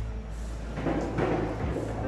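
A skee-ball rolling up the lane: a rushing rumble that builds from under a second in and runs for about a second, over a steady low arcade hum. The throw ends in the 10-point ring.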